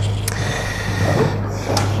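Low steady electrical hum from a public-address microphone system, with a faint thin steady tone over it in the first part.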